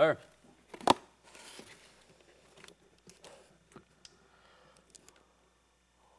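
Tape being peeled off a cardboard box and the flaps pulled open: a sharp snap about a second in, then a second or so of tearing, followed by scattered light rustles and clicks of cardboard.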